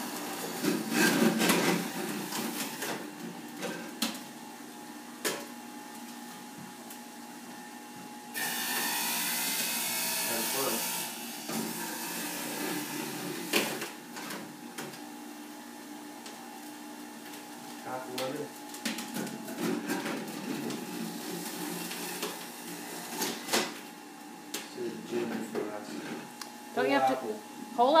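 Electric juicer running with a steady motor whine while produce is pressed down its feed chute with the pusher. About eight seconds in comes a louder, rasping stretch of about three seconds as the produce is shredded, with scattered knocks of the pusher and produce against the chute.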